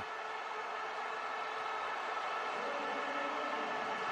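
Football stadium crowd cheering a goal: a steady, continuous roar of many voices.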